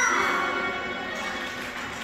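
Musical theatre pit orchestra playing held, sustained notes, just after a sung line falls away at the very start.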